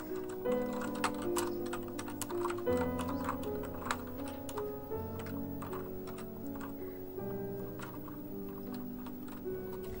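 Computer keyboard keys clicking irregularly as a message is typed, the keystrokes thickest in the first few seconds and sparser after, over background music of slow held chords.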